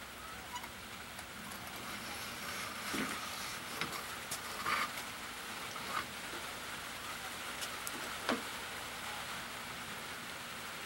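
An Evinrude 225 outboard's water pump housing being worked off the driveshaft and handled, giving a few light clicks and knocks scattered over a steady hiss.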